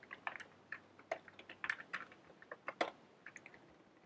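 Typing on a computer keyboard: faint, irregular keystrokes.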